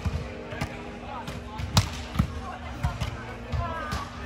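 A volleyball struck by players' hands and forearms during beach volleyball play: a series of about six sharp smacks, the loudest about two seconds in. The hits echo in a large indoor hall, with voices calling between them.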